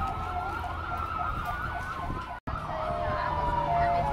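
Several emergency-vehicle sirens from an approaching sheriff's cruiser and fire trucks, wailing and yelping over one another. The sound cuts out for an instant a little past halfway.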